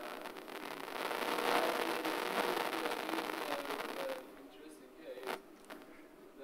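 Faint, indistinct speech from someone away from the microphone, loudest in the first four seconds, then quieter, with a sharp click about five seconds in.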